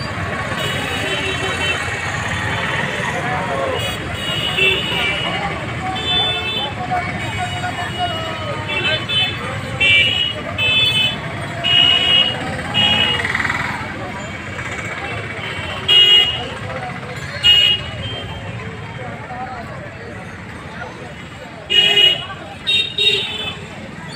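Busy street ambience with crowd chatter and traffic noise, over which vehicle horns give repeated short toots, several in quick succession around the middle and again near the end.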